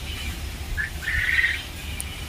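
A small bird chirping: one short high note just before a second in, then a brief twittering phrase.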